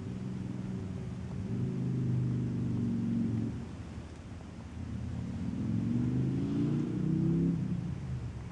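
Low, steady engine hum of the Beetle Turbo idling, heard from inside the cabin. It swells twice, first about a second and a half in, then again from about five seconds in.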